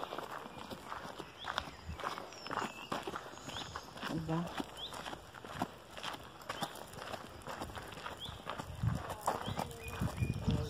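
Footsteps on a gravel road at a walking pace, with birds chirping in short high notes. A brief low voice sound comes about four seconds in and again near the end.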